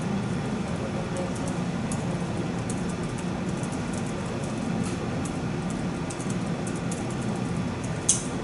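Steady murmur of many people talking at once around the tables of a classroom, with no single voice standing out, and light clicks and rustles of pens and paper throughout.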